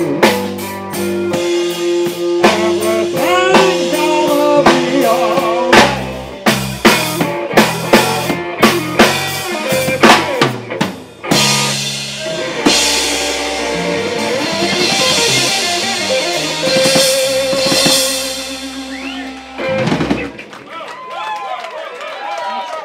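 Live rock band with drum kit, bass guitar and two electric guitars playing the closing bars of a song. About six seconds in comes a run of sharp accented hits, then a long held final chord with ringing cymbals that cuts off about twenty seconds in, leaving faint voices.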